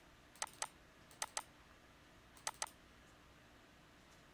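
Computer mouse clicking: three quick double-clicks, about a second apart, over faint room hiss.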